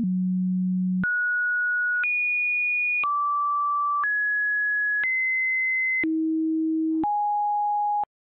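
A run of electronic sine-wave tones, a new steady tone every second at a different pitch, jumping between low and high at random, with a small click at each change: eight tones in all.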